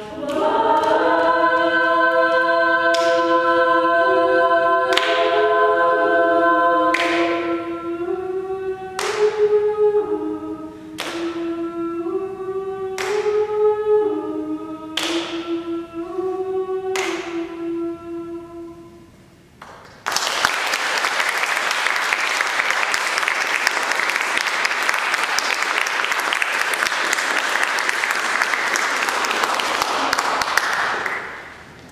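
A women's a cappella group singing a held chord, then a slow chordal close with a sharp percussive hit about every two seconds. The song ends about two-thirds of the way through, and after a brief pause the audience applauds.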